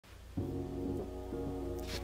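Intro background music starts about a third of a second in: sustained low notes that shift every half second or so.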